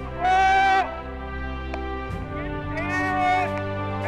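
A man's voice from a radio set, speaking in two long drawn-out phrases, over steady background music.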